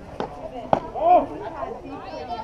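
A softball bat strikes a pitched ball with one sharp crack about three quarters of a second in, followed at once by a loud shout.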